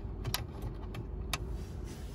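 In-cabin low rumble of a VW Golf 1.4 TSI's turbocharged petrol four-cylinder and its tyres as the car rolls slowly, with a couple of light clicks about a second apart.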